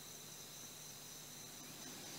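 Faint, steady, high-pitched chirring of insects under a quiet background hiss.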